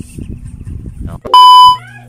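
A short, very loud electronic beep, one steady pitch held for about half a second, comes in about a second and a half in, over a rustling background noise. A steady low hum follows once it stops.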